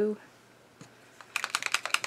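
A Posca paint marker shaken, its mixing ball rattling inside the barrel in a fast run of clicks that starts just over a second in.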